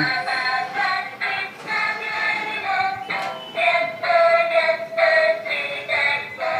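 A children's ride-on toy car playing its built-in electronic tune: a tinny melody with a synthesized singing voice, in short stepped notes and one longer held note in the middle.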